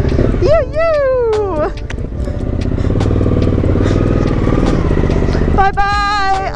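Suzuki V-Strom's V-twin engine running at low speed as the loaded two-up bike rides slowly off. A long, drawn-out called goodbye comes about half a second in, and another starts near the end.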